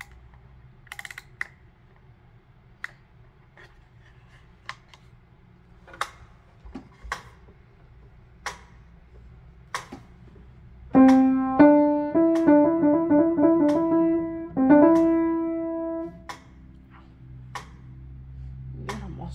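A few faint scattered clicks, then a short phrase played on a piano about eleven seconds in. It includes a quick trill between two neighbouring notes and ends on a held chord that fades away.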